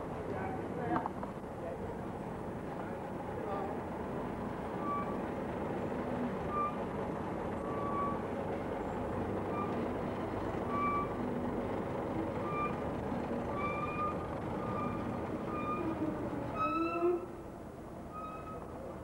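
Diesel engine of a DAF 2800 heavy tractor unit running low and steady as it crawls along hauling a wide load. From about four seconds in a short beep repeats roughly once a second, and near the end a brief sound rises in pitch.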